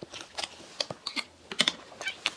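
Close-miked eating: a quick, irregular run of wet mouth clicks and smacks from chewing soft cream-filled donuts and curry, with a steel spoon scraping in a ceramic curry bowl. The loudest cluster of clicks comes about a second and a half in.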